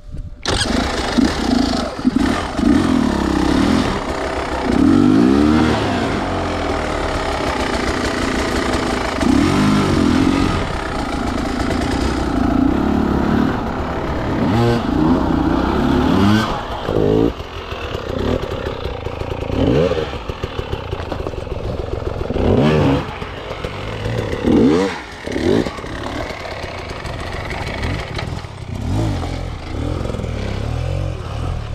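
Beta enduro dirt bike's engine starting about half a second in, then running and revved in repeated short throttle blips, its pitch rising and falling every few seconds.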